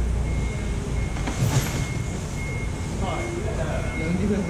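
Busy wholesale fish-market hall: a steady low rumble of machinery and vehicles, with a high electronic warning beep sounding on and off, like a forklift's. A sharp knock comes about a second and a half in, and faint voices are heard near the end.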